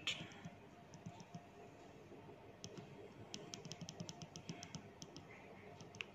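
Faint clicks of the small push button on a mini Crossbow antenna tracker, pressed repeatedly to step through its settings menu, with a quick run of clicks in the middle.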